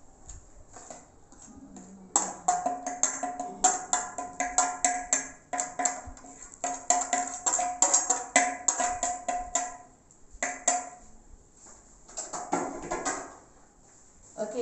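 Metal spoon clinking and scraping rapidly against a plate as flour is knocked off it into a bread-maker pan, with a steady ringing from the struck plate. The clinks begin about two seconds in and stop near the ten-second mark, with a few more shortly after.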